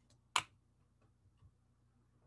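A single sharp click a little under half a second in, followed by a few faint ticks.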